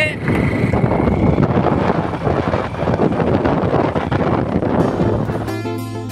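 Wind rushing and buffeting over the microphone of a moving motorcycle, a dense, rough noise with no tune in it. About five and a half seconds in, music comes in with a steady low note.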